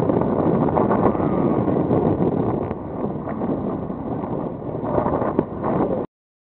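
Wind rushing over the microphone together with the steady noise of a boat on the open sea, easing a little in the middle.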